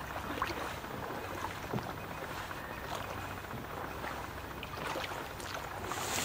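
Steady, moderate outdoor background noise with faint scattered ticks and rustles.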